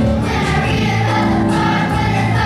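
A children's choir singing with musical accompaniment, steady sustained notes over a bass line.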